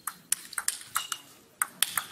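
Fast table tennis rally: the plastic ball clicks sharply off the table and the rubber-faced bats, about nine clicks in two seconds, in quick pairs of bounce and hit.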